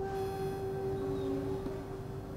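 Soft background music: one long held note, with a second, lower note sounding briefly in the middle.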